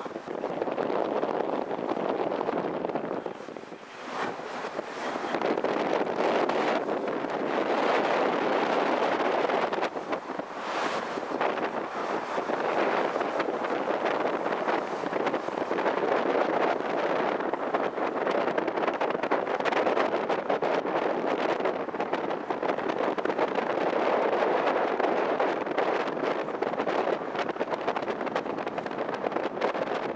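Wind buffeting the microphone on the open deck of a moving ship: a continuous rushing, gusting noise that drops away briefly about four seconds in.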